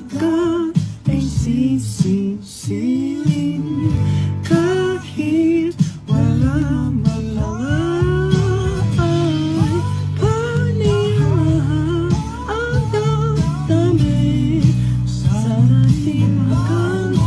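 A young man singing a slow Tagalog ballad over guitar accompaniment, holding and bending long notes.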